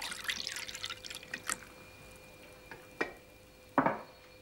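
Hot water poured from a metal kettle into a silver teapot, splashing for about a second and a half. Two brief knocks follow later.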